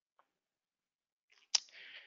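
Near silence, then a single sharp click about one and a half seconds in, followed by a brief faint hiss.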